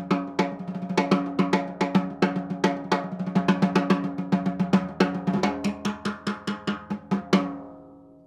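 DW Collector's Series Purpleheart snare drum with a coated head, played with the snare wires off: a run of stick strokes, each ringing with an open, pitched drum tone, coming faster through the middle. The last stroke falls about seven seconds in and rings out.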